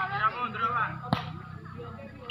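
Voices calling across the court, then, just over a second in, a single sharp smack of the volleyball.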